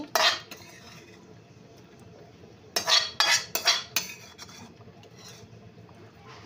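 A metal spoon clinking and scraping against a metal kadai as food is stirred. There is a sharp clatter just after the start, then a quiet stretch, then a quick run of four or five clinks and scrapes about three seconds in.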